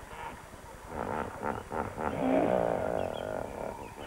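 A hippopotamus calling: a run of short grunts from about a second in, building into a longer, deeper honking call that dies away shortly before the end.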